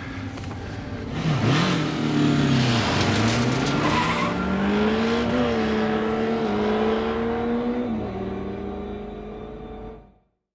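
Motorcycle engine revving, then accelerating away with a rising pitch that levels off and drops near the end as the sound fades out.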